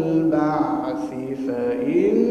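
A man reciting the Quran in a melodic chant through a microphone, holding long notes that slide from one pitch to the next, with a rising glide near the end.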